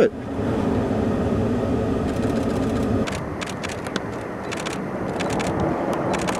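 Car engine running with a steady hum for about three seconds, then a quieter stretch broken by a run of short clicks and knocks.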